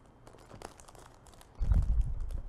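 Small plastic toy packets crinkling and being torn open by hand, with faint scattered crackles, then a louder low thump near the end.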